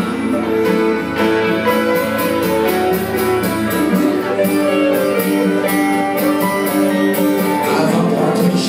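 Live band playing an instrumental passage without vocals: acoustic guitars strummed in a steady rhythm with a hollow-body electric guitar.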